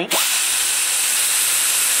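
Die grinder with a burr cutting the cast iron exhaust port of a Chevy Vortec 601 cylinder head: a steady high-pitched hissing whine, with a short rising glide as it spins up at the start.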